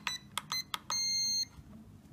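The transmitter's electronic beeper answering trim-button presses on a pocket DSM2 radio built from a Blade MLP6DSM's electronics: a few short high beeps in quick succession, then one longer beep of about half a second, about a second in.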